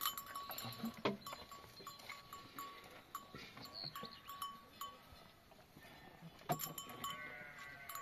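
Bells on a flock of sheep and goats clinking irregularly, with a sharp knock about a second in and another near 6.5 s, and a faint bleat near the end.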